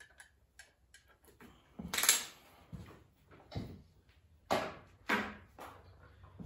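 Clicks and knocks of a chainsaw being lifted off a crane scale's steel hook: the metal hook clinking and the saw's handle knocking, loudest about two seconds in, with a few more knocks after.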